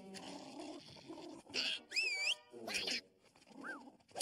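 Cartoon soundtrack of wordless character noises and sound effects: scratchy grunting sounds, then a wavering squeal about halfway through, framed by short noisy bursts, and a small rising-and-falling squeak near the end.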